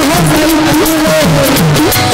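Live Bengali baul folk song: a woman sings into a microphone over a steady hand-drum beat, her melody bending and gliding between notes.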